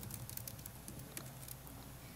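Faint, irregular keystroke clicks from typing on a laptop keyboard, about eight taps over two seconds, over a steady low hum.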